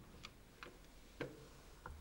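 A few faint, sharp clicks at uneven intervals, the strongest a little after a second in: the lock and latch of a wooden apartment door as it is opened.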